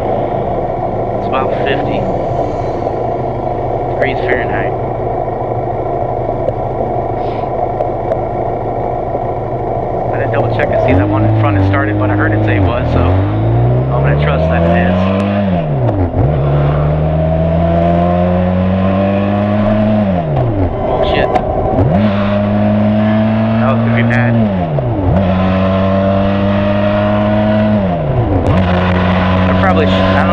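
Benelli TRK 502's 500 cc parallel-twin engine idling steadily for about ten seconds, then pulling away and accelerating up through the gears. The pitch rises and drops sharply at each of about five upshifts, settling into a steady cruise near the end.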